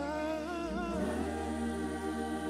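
Church worship team singing into microphones: a lead voice glides and wavers through a run in the first second, over held harmony from the other singers and sustained low notes.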